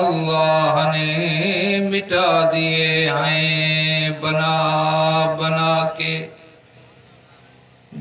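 A man's voice chanting Urdu devotional verse in long, held melodic notes, breaking off about six seconds in.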